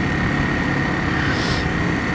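Motorcycle engine running at a steady speed while riding, with steady road and wind noise and a thin, steady high tone.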